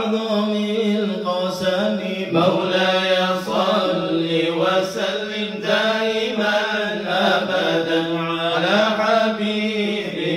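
A group of men's voices chanting Islamic dhikr, unaccompanied and melodic, in long swelling phrases over a steady low note held underneath.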